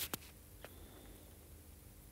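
Faint room tone with a low steady hum, with a couple of small clicks at the very start and one fainter click about half a second later.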